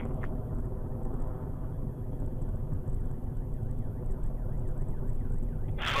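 Steady, deep rumble of a Soyuz-2.1a rocket's kerosene-oxygen first-stage engines in flight, heard from the ground as the rocket climbs away.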